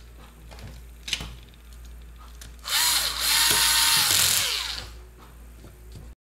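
Cordless electric screwdriver running for about two seconds, driving a screw into a radio-control car's plastic chassis; its whine dips slightly as it starts and then holds a steady pitch. A light click comes about a second before.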